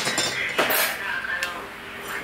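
Metal hand tools set down on a worktable and a steel bar handled: a few sharp clinks and knocks, the loudest right at the start.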